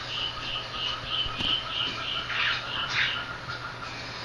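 Wildlife chirping from a nature documentary soundtrack played back through a speaker: short calls repeating about four times a second, then a few harsher, rasping calls near the end.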